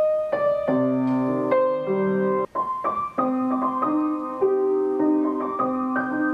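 Upright piano playing a melody over held chords in both hands: the song's opening passage, played here to bring the song to its end. One brief break in the sound about two and a half seconds in.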